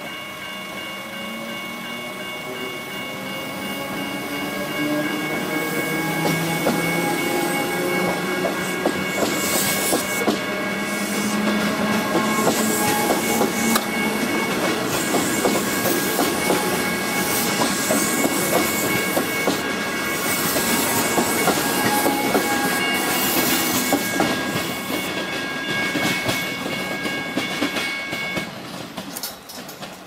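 Comeng electric train passing over a level crossing. A rising motor whine comes as it gathers speed, then a long run of wheel clicks over the rails as the carriages go by. The crossing's warning bells ring steadily under it all and stop abruptly near the end.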